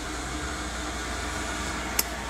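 A steady background hum and hiss, even in level, with a short click right at the end.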